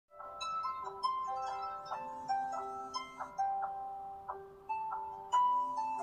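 A melody of bright, marimba-like struck notes, each ringing briefly and fading, several notes a second.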